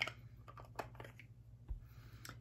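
A series of light clicks and taps as small cosmetics containers are handled on the vanity, with a steady low hum underneath.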